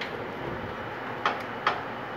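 Two short, sharp clicks about half a second apart, from the welding cables and work clamp being handled at the welder's metal cart, over steady room noise.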